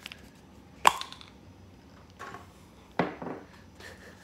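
A few sharp knocks over quiet room tone: a loud one a little under a second in, a faint one after about two seconds, and another sharp one at about three seconds.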